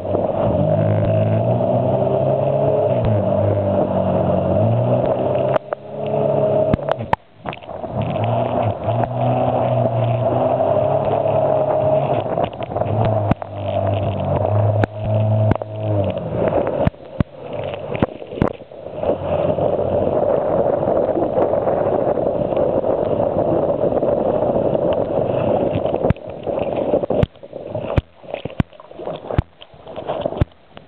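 Honda personal watercraft's engine running under way, its pitch rising and falling with the throttle, mixed with water splashing over a camera mounted at the stern. The sound drops out briefly twice in the first quarter and turns choppy and broken near the end.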